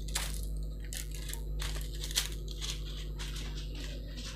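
A large sheet of metallic foil paper crinkling and crackling as hands unfold and smooth it, in a run of irregular crackles with a sharper one about two seconds in.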